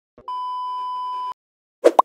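An electronic beep: one steady, high tone held for about a second. After a short gap it is followed near the end by a brief, loud burst of sound and a click, an intro sound effect as the logo appears.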